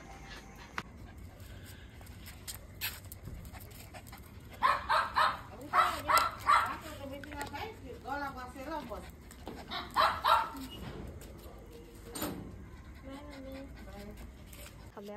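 Puppies barking and whining in short bursts, in a cluster about five seconds in and again around ten seconds.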